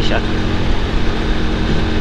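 Small 110 cc motorcycle engine running steadily while riding on a gravel road, mixed with a steady rush of wind on the microphone.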